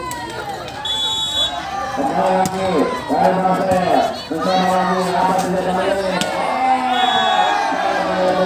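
Crowd of spectators around an outdoor volleyball court, many voices talking and shouting over one another. A brief high steady tone sounds about a second in and again around seven seconds.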